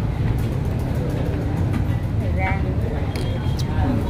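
Busy restaurant din: scattered background voices and a few light clinks of tableware over a steady low rumble.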